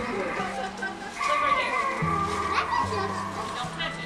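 Music with sustained bass notes that step to a new pitch every second or so, mixed with children's voices.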